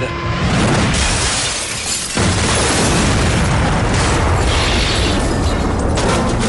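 Rocket crashing into an apartment and exploding, as a film sound effect: a rush of noise, then about two seconds in a loud blast whose rumble carries on at full strength.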